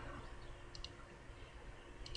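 A computer mouse button clicked once, heard as a faint pair of quick ticks about three-quarters of a second in, over quiet room tone with a faint steady hum.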